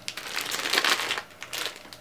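Clear plastic wrapping crinkling as it is handled, in a dense crackle through the first second or so that then dies away.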